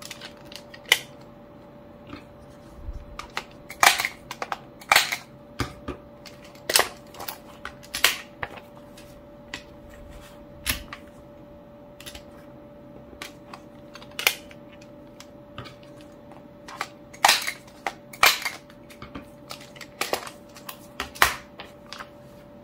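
Repeated sharp clicks and snaps of a CARL six-hole diary punch as sheets are seated in its magnetic guide and punched. The strokes come irregularly, with quieter paper handling between them.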